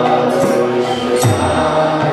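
Kirtan: voices chanting a Hindu devotional mantra to instrumental accompaniment, with a sharp ringing strike about a second and a quarter in.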